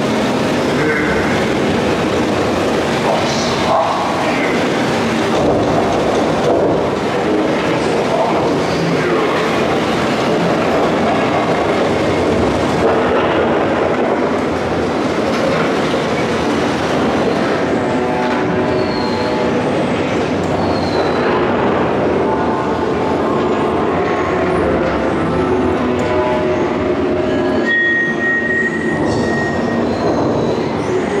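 A Geister Rikscha dark-ride car running steadily along its track: a continuous rolling rumble and rattle from the ride vehicle, with a few faint held tones in the second half.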